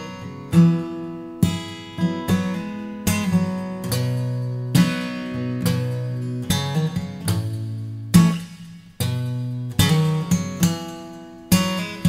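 Solo steel-string acoustic guitar with a capo, played with bass notes and picked chords, each stroke ringing out and fading before the next. Purely instrumental, no voice.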